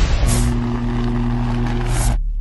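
Logo-reveal sound effects from a channel intro: a whoosh about a quarter second in, then a steady low, engine-like hum held on, with a second whoosh near the end before the hum cuts off.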